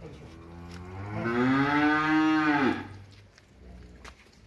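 Holstein cow mooing: one long moo that starts low, rises and swells in pitch and loudness, then drops and cuts off sharply about three seconds in.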